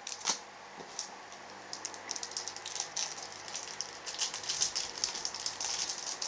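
Clear plastic eraser packaging handled in the fingers: one click near the start, then from about two seconds in a run of small crinkling crackles and rattles.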